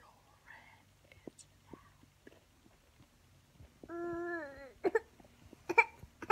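Soft whispering in a quiet room. About four seconds in comes a short, high-pitched voiced sound, followed near the end by a few short, sharp vocal sounds.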